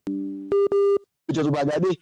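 Electronic tones: a steady chord of several tones for about half a second, then a single louder beep with clicks at its start, lasting about half a second. Speech follows.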